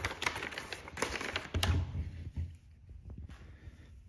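Brown packing paper rustling and crinkling as a coilover shock absorber is slid out of it, with a few light clicks and knocks from handling; it turns quieter after about two seconds.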